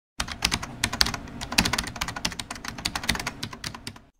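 Keyboard typing: a fast, uneven run of sharp clicks, about ten a second.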